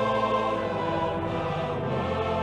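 Choir singing a hymn, holding long sustained notes.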